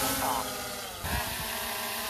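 DJI Mini 3 quadcopter's propellers buzzing as it lifts off from a hand launch, the pitch rising at the start and then holding steady as it hovers.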